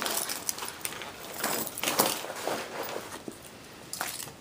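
Papers and clipboards being stuffed into a fabric flight bag: rustling and scuffing, with a few small clicks and clinks of clips and hardware.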